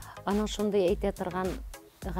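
A person speaking over background music; the voice stops near the end.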